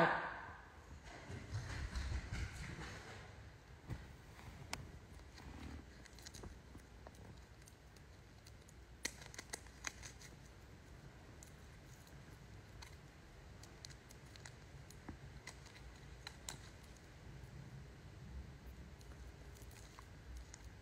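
Quiet room with faint handling and rustling noise, a soft low rumble about two seconds in, then scattered faint clicks as the phone is shifted and handled.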